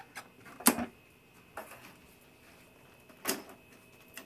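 A few sharp knocks and clicks from an upright commercial vacuum cleaner being handled: the loudest a little under a second in, a lighter one about a second later, and another past the three-second mark.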